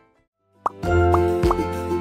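A short gap, then a cartoon 'plop' sound effect about half a second in. It leads into a children's show jingle with steady notes over a heavy bass, with more short upward-sliding pops.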